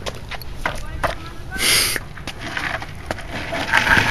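Faint voices with scattered light knocks and a short hissing burst about a second and a half in.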